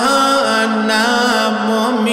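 A man's solo voice singing a slow, melismatic devotional chant in a waz sermon, holding long notes with wavering ornamented bends.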